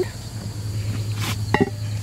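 Crickets chirring steadily over a low, even hum, with a brief voiced sound about one and a half seconds in.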